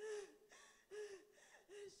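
A woman sobbing close to a handheld microphone: three short, gasping sobs about a second apart, each a brief catch of the voice with breath.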